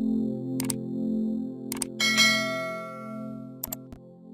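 Video-intro music of sustained low chords, with a subscribe-button animation's sound effects over it: three quick double clicks and a bright bell ding about two seconds in that rings on and fades.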